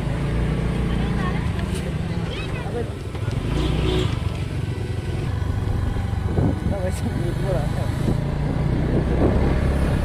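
A motor vehicle's engine running steadily under way, a low hum, with faint voices in the background now and then.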